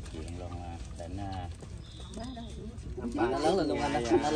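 People talking, with voices growing louder from about three seconds in.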